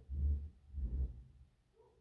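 Two low bass thumps in the first second, like bass-heavy music playing from a car.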